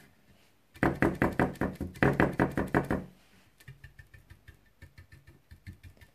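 Stiff paintbrush dabbed rapidly onto a pressed-metal number plate, stippling on a rust effect: a quick run of knocks, about six or seven a second, for a couple of seconds, then a lighter, quieter run of taps.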